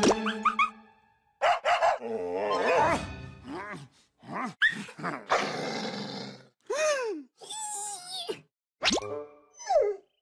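Cartoon sound effects in quick succession: a dog growling and barking, springy boings, squeaky vocal noises and whistle-like pitch glides that arch up and fall away, with short silences between them.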